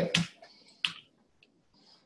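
A single sharp key click from a laptop keyboard about a second in, then a much fainter tick half a second later, as a terminal command is edited; otherwise quiet.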